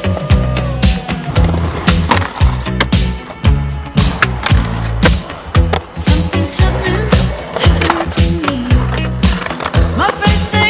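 Skateboards rolling on concrete, with sharp clacks of boards popping and landing, over a music soundtrack with a steady beat.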